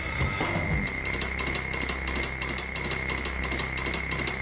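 Backing music with a steady drum-kit beat and a held high tone running under it.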